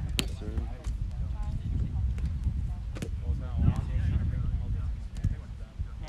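Indistinct talking of several people over a steady low rumble, with a few sharp taps, the loudest about three seconds in.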